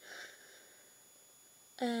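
A woman's short breath out through the nose as she laughs softly, lasting about half a second, followed by quiet room tone. Her voice starts again near the end.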